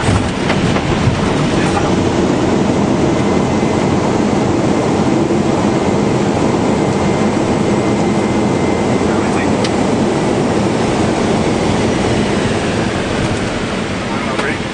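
Airbus A319 landing rollout heard from the cockpit: a loud, steady rush of engine and runway rolling noise that swells about a second in and eases slightly near the end, as the jet decelerates after touchdown.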